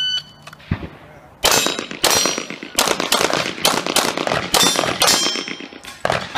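A shot timer's electronic start beep, then about a second and a half later a rapid string of handgun shots in quick groups with short pauses, running until near the end.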